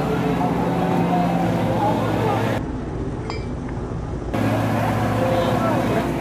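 Many people talking at once over a steady low engine hum. For about a second and a half in the middle the sound turns quieter and duller.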